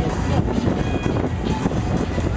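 Fairground ambience carried by loud music from a ride's sound system, over a steady low rumble.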